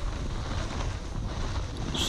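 Wind rushing over an action camera's microphone while snowboarding downhill, a steady rumbling noise with no distinct strokes.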